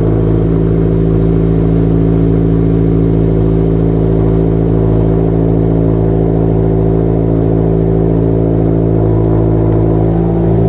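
A sports car's engine idling steadily, heard close to its quad exhaust tips: an even, unchanging hum.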